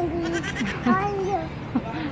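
Voices only: a woman says "no", mixed with drawn-out, wavering voice sounds.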